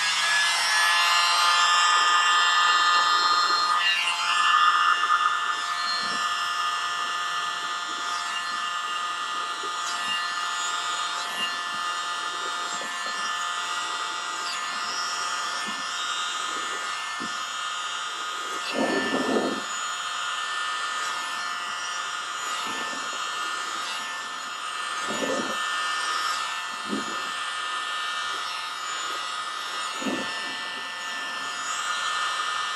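Tiny handheld electric blower running steadily with a high, multi-toned motor whine as it blows wet paint outward across a canvas; it is louder for the first few seconds, then settles a little quieter.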